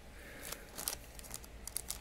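Foil trading-card pack wrapper crinkling as it is handled and opened. The crackles are faint at first and grow sharper and more frequent near the end.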